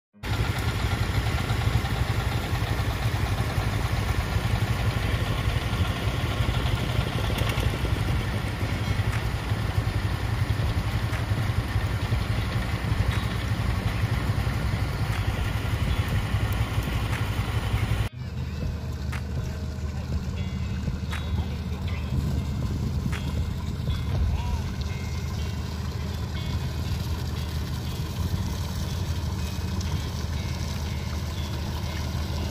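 Diesel engines of wooden fishing boats running in a steady low drone. It is louder and noisier at first, then drops suddenly about eighteen seconds in to a quieter, lower drone.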